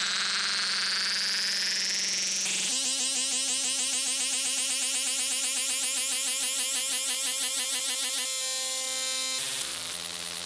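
Doepfer A-100 analog modular synthesizer patch playing: a high, noisy tone rising steadily in pitch, then switching abruptly about two and a half seconds in to a buzzy drone with many overtones that pulses several times a second. Near the end it jumps to different held tones and changes again just before the close.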